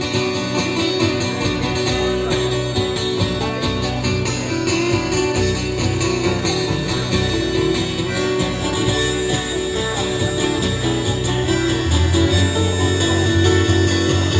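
Live acoustic band playing an instrumental break: strummed acoustic guitars over a bass line, with a harmonica played into the vocal microphone carrying the melody.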